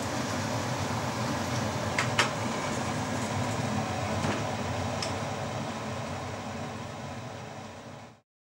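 Steady ambient hum and hiss with a few faint clicks, fading out near the end.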